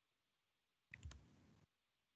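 Near silence, with one faint double click about a second in, as of a computer mouse or key being pressed to advance a presentation slide.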